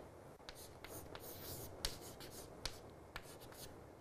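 Chalk writing on a chalkboard: faint scratching strokes with a few sharp little taps as the chalk meets the board.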